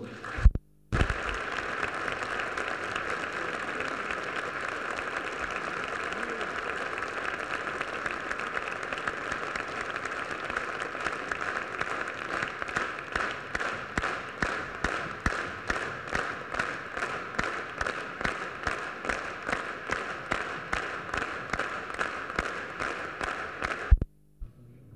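Large audience applauding, starting about a second in. About halfway through, the applause settles into rhythmic clapping in unison, about two to three claps a second.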